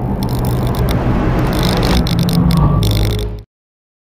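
Loud intro sound effect: a dense rumbling noise with a steady low hum that builds and then cuts off suddenly about three and a half seconds in, leaving silence.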